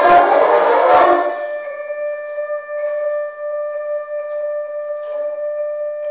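Concert band playing loudly, ending a phrase with a sharp accent about a second in, then one softer note held steadily for about four seconds.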